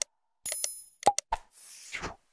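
Sound effects of a subscribe-button animation: a mouse click, a short bell-like ding about half a second in, a few more clicks about a second in, then a whoosh near the end.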